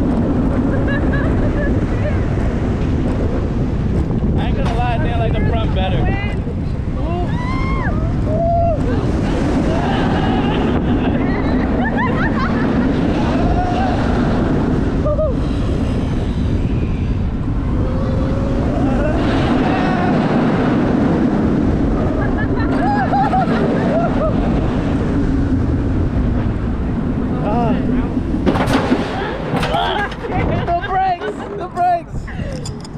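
Roller coaster ride from on board: loud wind buffeting on the microphone and rumbling from the train, with riders yelling and whooping at intervals.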